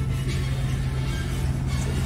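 Pickup truck engine running nearby with a steady low hum.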